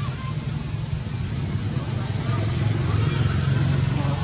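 A steady low motor-like rumble, growing a little louder in the second half.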